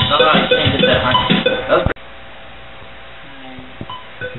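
Electric guitar being picked, with a bell-like click ticking about three times a second. About two seconds in the sound cuts off abruptly, leaving a quieter steady noise with a faint held tone until the picking starts again.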